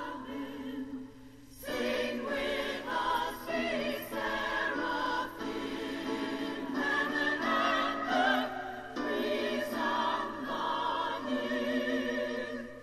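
Choir of women's voices singing a slow hymn in harmony, long held notes with vibrato, with a brief break between phrases about a second and a half in.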